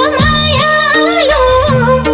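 A Nepali lok dohori song playing loudly: an ornamented melody that slides and bends between notes, over bass notes and a steady accompaniment.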